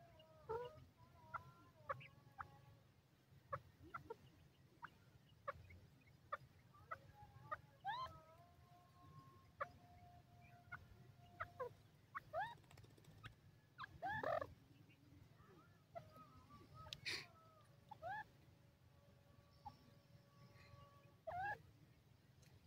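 Grey francolin giving soft, quiet call notes: many brief rising chirps scattered throughout, with a few longer held notes, the loudest coming about fourteen seconds in.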